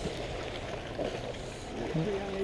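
Faint, steady outdoor background noise of light wind and water around a bass boat on a lake, with no distinct sound events.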